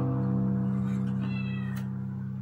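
Last strummed chord of an acoustic guitar ringing out and slowly fading. About a second in, a brief high-pitched sound, and a faint click near the end.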